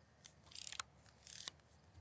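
Faint scraping and rustling from a rifle being handled and shifted against a plate carrier, in a few short strokes.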